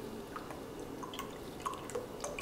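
Coconut milk trickling in a thin stream from a carton into a glass measuring cup, with faint small drips and splashes.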